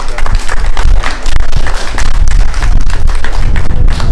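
Scattered clapping from a small audience, with crowd chatter and a steady low rumble underneath.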